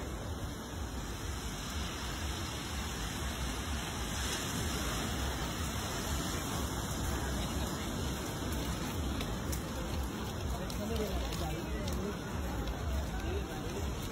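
Wind buffeting the phone's microphone in a steady breeze, with the babble of passers-by underneath.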